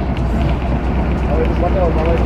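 A boat's engine running with a steady, evenly pulsing low throb. Voices can be heard over it near the end.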